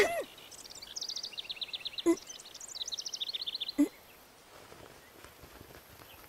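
Birdsong: two quick trills of short, high chirps, each lasting about a second. A brief gasp from a person comes between them and another at the end of the second.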